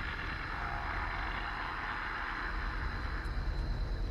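Car rumbling low and steady, recorded on a phone, with a swell of hiss through the middle that fades near the end.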